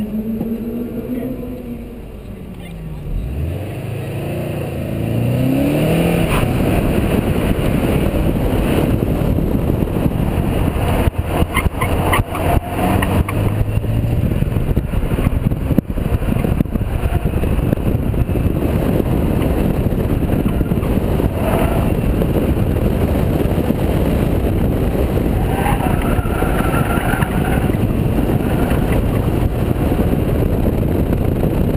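Subaru WRX's turbocharged flat-four engine revving, then accelerating hard with its pitch climbing as the car launches about three seconds in. From about five seconds in, engine noise and wind on the outside-mounted camera's microphone make a loud, steady rush.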